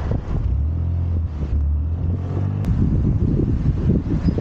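Scooter ride with wind buffeting the microphone in low rumbling gusts, over the Scomadi TT125i's engine humming at steady revs for about two seconds in the middle. One sharp click about two-thirds of the way through.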